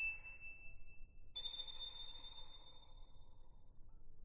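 A violin ends the piece on high, pure notes: one held note, then a higher one about a second and a half in that fades away.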